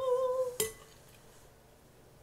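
A closed-mouth 'mmm' hum held at one pitch, stopping about half a second in. A metal spoon then clinks once against a glass bowl, with a brief ring.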